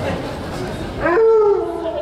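An Alaskan Malamute howls once about a second in: the note rises quickly, then holds and sinks slowly for under a second.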